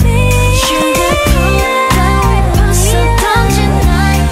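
A Sterling StingRay short-scale electric bass playing a line of separate notes along with an R&B-pop song, over a woman's singing voice. The low notes break off briefly a few times.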